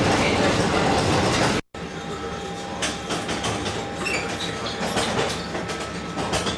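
Tram riding noise heard from on board: a loud, even rumble of wheels on rail, broken off suddenly by an edit about a second and a half in, then quieter running with scattered sharp clicks and a faint steady whine.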